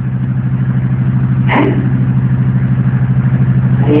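Steady low mechanical hum with a rapid, even pulse, like a small motor running, with one brief short sound about one and a half seconds in.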